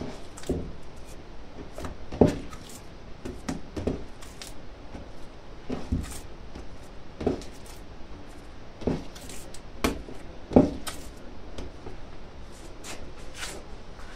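A ball of dough being kneaded by hand on a countertop, thumping down against the surface about every one to two seconds, with soft squishing in between. The loudest thumps come about two seconds in and again near ten and a half seconds.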